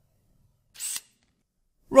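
Near silence, broken about a second in by one short hiss-like noise lasting a fraction of a second.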